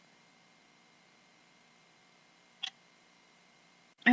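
Near silence: faint room tone, with one brief soft noise about two and a half seconds in.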